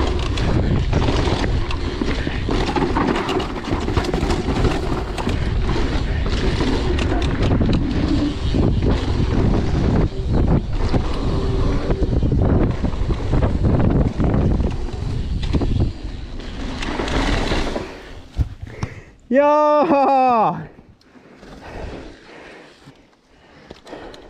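Wind buffeting the microphone and tyres rumbling over a dirt trail as an enduro mountain bike descends at speed, with frequent knocks and rattles from the bike over bumps. The noise drops away suddenly about eighteen seconds in as the bike slows.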